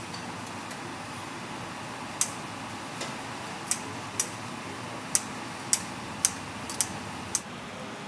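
Steady room noise of a busy eatery, broken by about eight sharp, light clicks from about two seconds in, the last five evenly spaced roughly half a second apart.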